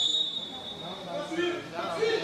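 A referee's whistle blown once, a single steady high note lasting about a second, signalling that the penalty kick may be taken. Voices follow in the second half.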